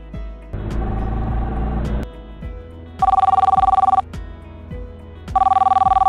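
Telephone ringing: two trilling rings, each about a second long and a little over a second apart, after a short burst of hiss. Background music runs underneath.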